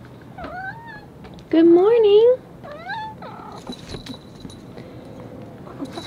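Cat meowing: a fainter meow about half a second in, then a long, loud meow at about 1.5 s that rises and falls in pitch, and a short meow near 3 s.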